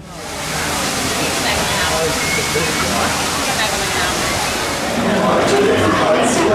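Indistinct chatter of a crowd over a steady rush of running water. It fades in over the first second and grows a little louder near the end.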